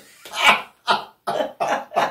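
Laughter: a run of short breathy bursts of a woman's laugh, separated by brief silences.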